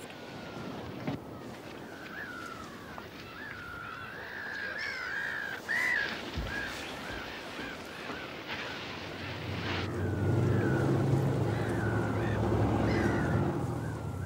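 Birds calling over and over in short rising-and-falling chirps. From about ten seconds in a low, steady boat engine hum joins them and the sound gets louder.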